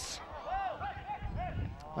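Faint, short shouts from football players on the pitch during a challenge for the ball: several quick calls that rise and fall in pitch, over low background noise from the ground.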